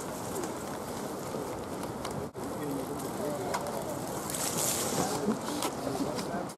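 Outdoor ambience of steady rushing noise with faint, distant voices of spectators, a brief hiss about four and a half seconds in, and a momentary dropout in the sound a little after two seconds.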